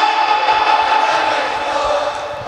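Large crowd of mourners at a chest-beating latmiya, with one steady held tone over the sound system that fades after about a second and a half.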